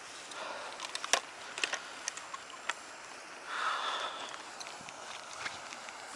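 A few light clicks and rustles from fishing gear being handled on a grassy bank, with a short rushing hiss about three and a half seconds in.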